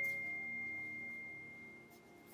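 A single high, pure chime tone, struck just before, ringing out and slowly fading, over soft background music.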